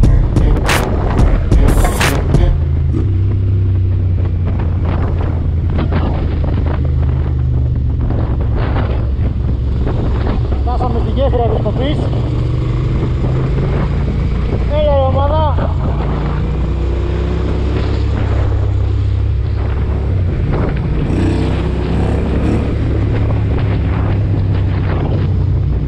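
Motorcycle engine running steadily under way, its pitch shifting a few times with throttle and gear changes, with wind buffeting the microphone. Background music cuts out in the first two seconds, and a brief wavering, warbling tone sounds twice near the middle.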